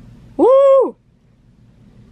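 A woman's short, high 'ooh' exclamation, about half a second long, rising and then falling in pitch, over a faint low hum.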